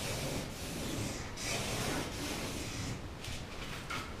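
Felt-tip marker drawn along a straightedge on kraft paper, a dry rubbing scratch in long strokes with brief breaks.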